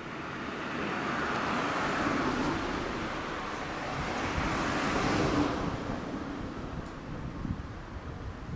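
A road vehicle passes by: its noise swells over the first couple of seconds, holds, then fades away after about five and a half seconds.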